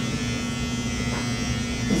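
Electric hair clippers buzzing steadily as they are run over short hair on the back and side of the head.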